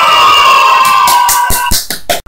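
A group of children cheering and shouting in one long held cheer, which breaks off about a second and a half in with a few sharp clicks.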